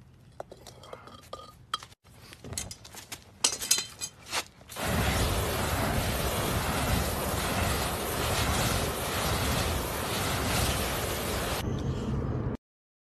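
Raku firing: clinks of metal tongs and a hot pot as it is set down on a bucket of sawdust, then, about five seconds in, a sudden steady roar as the sawdust catches fire around the pot, lasting until just before the end.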